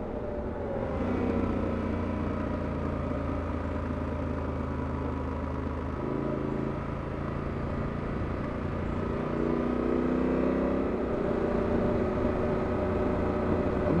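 Yamaha adventure motorcycle's engine running at road speed, heard from the rider's seat over a steady rush of riding wind. The engine note shifts about halfway through and rises again a few seconds later as the throttle changes through the bends.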